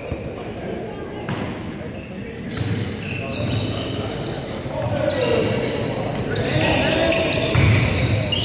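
Indoor basketball play on a hardwood court: the ball bouncing, sneakers squeaking and players and spectators calling out, all echoing in a large gym. It gets busier and louder a few seconds in as live play starts.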